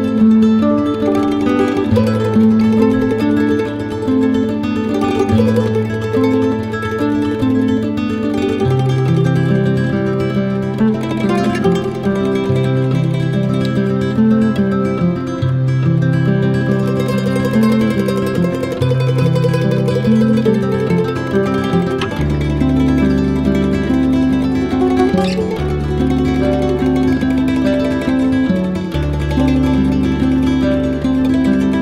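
Instrumental background music: a plucked-string melody over held bass notes that change every couple of seconds, the bass dropping lower about two-thirds of the way through.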